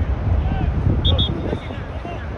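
Wind rumbling on the microphone under players' distant shouts. About a second in come two quick, high whistle tweets in succession.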